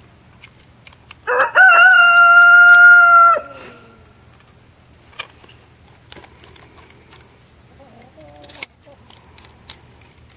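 A rooster crowing once, loud and about two seconds long, starting a little over a second in: the pitch rises quickly, holds steady, then drops off at the end. A shorter, fainter call follows about eight seconds in.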